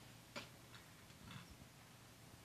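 Near silence: room tone with a low hum, one faint light click about half a second in, and a soft rustle a little after the middle.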